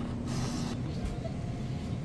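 A lottery vending machine's bill acceptor drawing in a banknote: a short motor whir that fades out about three-quarters of a second in, over a steady low hum.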